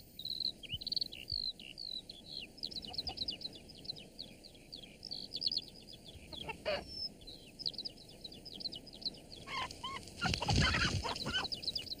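Soundtrack birdsong: many small birds chirping with quick, high chirps, and a hen clucking. The sound grows louder about ten seconds in.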